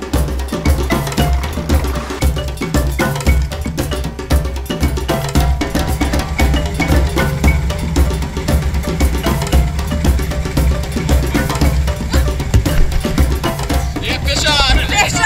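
Background music with a steady, busy percussion beat over a pulsing bass line.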